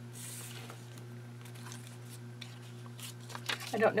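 Faint rustling and light handling of old paper scraps and cards on a craft mat, over a steady low hum. A woman's voice starts near the end.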